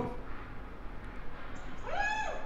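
A short pause, then near the end a high-pitched cry like a cat's meow, rising quickly in pitch and then held.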